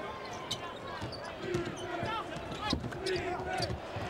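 On-court sound of a college basketball game: a basketball bouncing on the hardwood floor and sneakers squeaking, over the arena crowd's steady noise.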